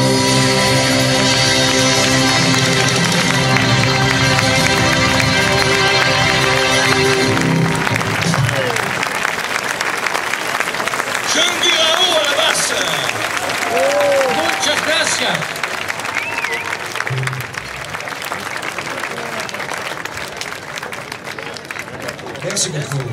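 A live rock band's final chord on electric guitar and drums ringing out, cut off sharply about seven and a half seconds in. The audience then applauds with some shouts, slowly dying down.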